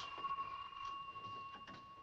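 A telephone ringing: one long, steady, high-pitched ring that lasts about two seconds.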